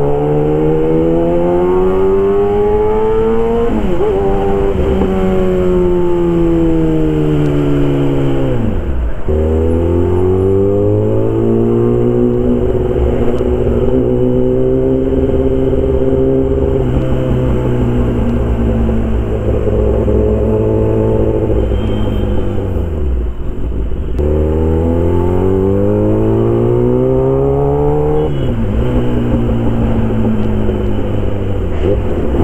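Kawasaki ZX-10R inline-four engine through an SC Project CRT aftermarket exhaust, pulling hard while riding: the revs climb and fall back repeatedly as it works through the gears. There are pitch drops at shifts or throttle lifts about 4 and 9 seconds in, the 9-second one the deepest, then again around 23 seconds and near the end.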